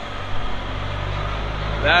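A vehicle engine running steadily nearby, a low drone that sets in about half a second in.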